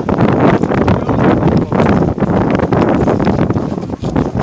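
Wind buffeting the microphone, a loud, gusty rumble with rapid uneven flutter.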